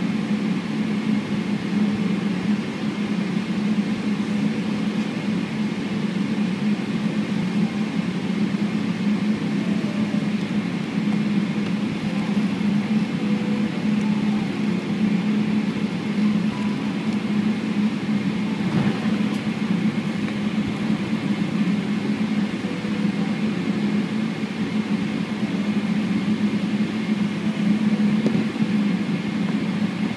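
Cabin noise inside a Boeing 777-300ER taxiing with its GE90 engines at idle. It is a steady low hum with a faint, steady high whine above it.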